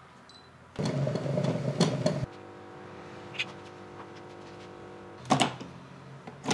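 Lavazza Deséa capsule coffee machine brewing into its milk jug: a loud rough mechanical noise for about a second and a half, then a steady pump hum for about three seconds, then a sharp clatter near the end.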